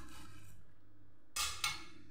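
A knife cutting through the crisp, flaky crust of a freshly baked puff-pastry pie: two short crunches about one and a half seconds in.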